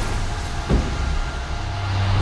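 Low, steady rumbling drone of trailer sound design, with a single soft thud about two-thirds of a second in.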